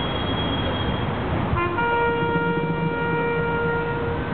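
A ceremonial bugle call: a short lower note, then a long steady higher note held for over two seconds. It sounds over a steady background of city traffic.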